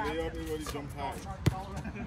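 A basketball hits the court once, a single sharp thud about one and a half seconds in, over players' shouting voices.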